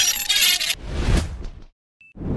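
A bright, glittering sound effect for a subscribe-button logo animation. It gives way after under a second to a lower rushing sound that fades out about a second and a half in.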